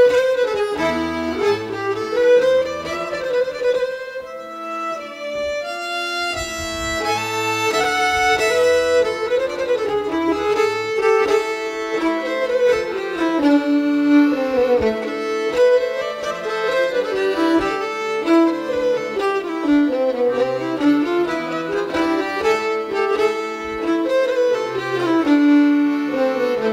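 Fiddle playing an instrumental folk tune over lower accompaniment, the melody busy with quick note changes; the music thins briefly about four seconds in before filling out again.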